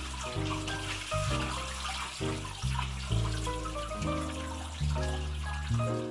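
Water running and splashing as a hand rinses a photographic print in a plastic tray in a sink, under background music.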